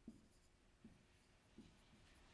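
Faint marker pen strokes on a whiteboard: a few short scratches as letters are written.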